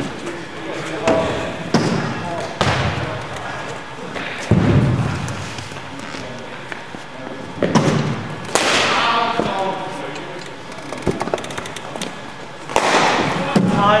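Scattered single thuds of cricket balls bouncing on the hard floor of an indoor net hall, several seconds apart, with voices in the background.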